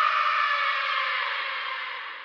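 A sustained, hissy synthesizer effect in a techno track, with no beat under it. It fades slowly and grows duller as it fades.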